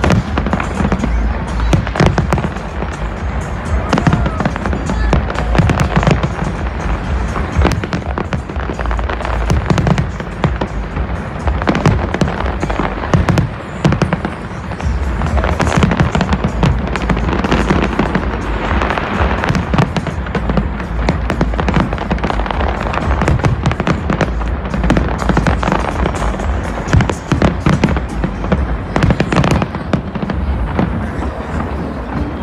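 Large aerial fireworks display going off in continuous volleys: dense, rapid cracks and bangs over a steady deep rumble, with no let-up.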